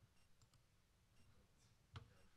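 Near silence broken by computer mouse clicks: two faint ones about half a second in and a single sharp click near the end.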